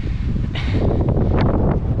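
Wind buffeting a body-worn action camera's microphone: a loud, steady low rumble, with a few faint ticks.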